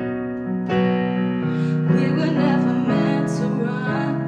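Music: chords played on a keyboard piano, changing about once a second, with a woman's voice singing over them.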